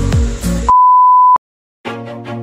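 Electronic background music with deep falling bass sweeps cuts off, and a loud, steady, high-pitched beep follows for just over half a second. After a short silence, new music starts near the end.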